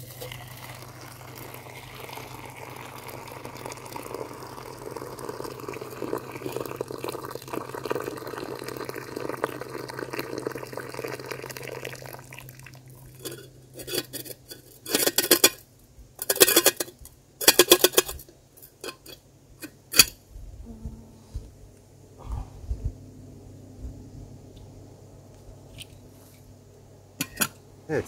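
Hot water poured steadily from a camping kettle into a small pot to brew tea, for about twelve seconds. Then a series of sharp metal clanks and rattles as the kettle and cookware are handled.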